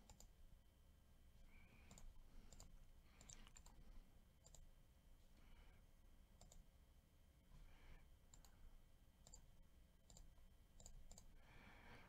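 Near silence broken by faint, irregular clicks of a computer mouse and keyboard.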